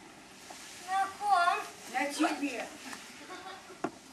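A woman's voice speaking in short phrases with pauses, and a single sharp click near the end.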